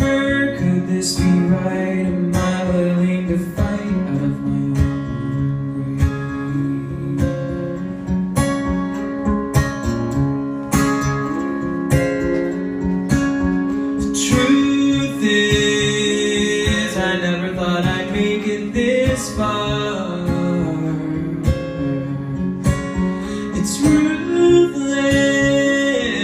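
Solo acoustic guitar strummed in a steady rhythm, with a man's voice singing long held notes over it around the middle.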